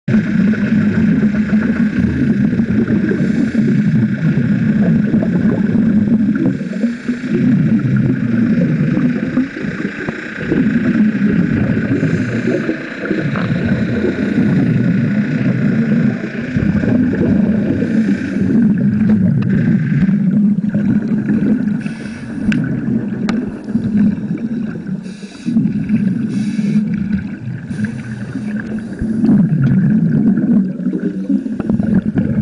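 Muffled underwater rumble and gurgle of a scuba diver's regulator exhaust bubbles, in surges with short dips every few seconds.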